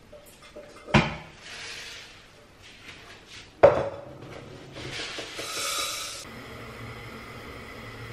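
Pots and kitchenware being handled while rice is set to cook: two sharp knocks, about a second in and louder at about three and a half seconds, with spells of rushing noise between them, the last cutting off suddenly near the six-second mark, followed by a steady low hum.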